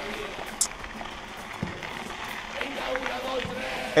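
Mountain bike rolling over a gritty dirt surface: a steady noise of tyres on grit and small rattles from the bike, with a few faint clicks.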